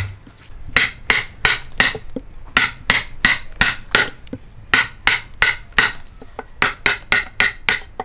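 Steel chisel driven into the end grain of a green log by repeated hammer blows, chopping out a notch. The sharp strikes come about three a second in runs of three or four, with short pauses between runs.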